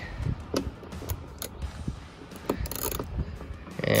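Quarter-inch drive ratchet on a long extension, clicking and ticking irregularly as it works the 10 mm door-panel bolts loose behind the armrest of a GM truck door.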